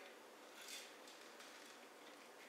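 Near silence: room tone, with one faint, brief soft rustle a little under a second in.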